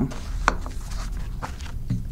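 A sheet of paper being handled at a lectern: a few sharp clicks and faint rustles over a steady low hum.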